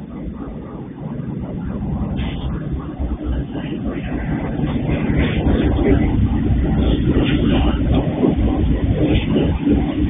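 Diesel freight train locomotive approaching and passing close by: the engine's rumble and the wheels on the track grow louder over the first five or six seconds, then hold steady as the locomotive goes past.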